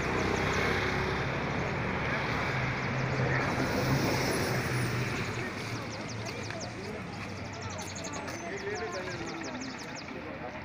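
A low, steady vehicle engine hum under a dense rushing noise, with indistinct voices.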